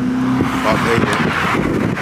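A car passing close by on the road, its engine hum and tyre noise swelling to a peak mid-way, with some voices under it.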